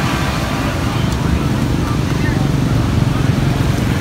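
Low, steady rumble of a motor vehicle engine running nearby.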